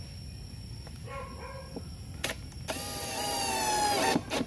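Cordless drill running in one burst of about a second and a half near the end, its motor whine rising slightly in pitch as it drives a screw through a concealed cabinet hinge into a plywood door. A single click comes shortly before it.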